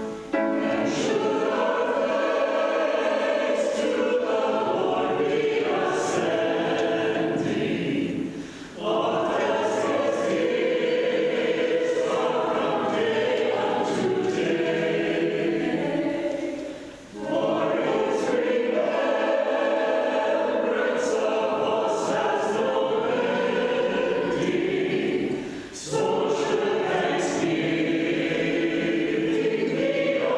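Mixed-voice church choir singing an anthem in sustained phrases, with a short breath break between phrases about every eight seconds.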